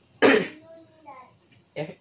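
A man coughing once, a single sharp burst about a quarter second in that fades within half a second.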